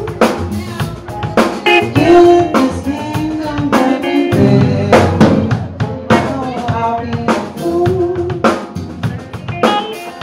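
Live band music: a drum kit keeping the beat with sharp regular hits, under bass, electric guitar and keyboard, with a pitched melody line bending over the top.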